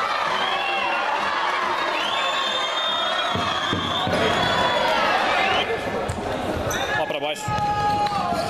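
Indoor futsal play in a sports hall: the ball being struck and thudding on the court a few times, among shouting voices of players and spectators.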